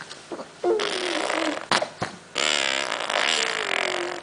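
Baby blowing raspberries through food-smeared lips: two long buzzing, spluttering blows, the first about a second in and a longer one from about halfway. It is a baby's protest at being fed.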